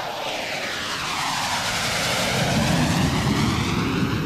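Jet aircraft flying past: a steady roar with a whooshing sweep running through it, the low rumble growing louder toward the end.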